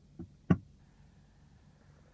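A 2015 BMW 320i's small flip-down storage compartment lid under the dashboard is pushed shut by hand: a light tap, then one sharp click as it latches about half a second in.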